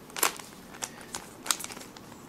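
Plastic layers of a Fisher Cube twisty puzzle clicking as they are turned by hand: about five short, sharp clicks spread through the two seconds.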